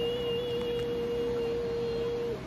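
A woman's voice holding one long, steady high note, the drawn-out end of a sung "bye", after gliding up into it.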